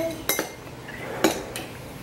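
Metal spoons clinking against ceramic soup bowls: a few sharp clinks, each with a short ring, as spoons stir and scoop soup.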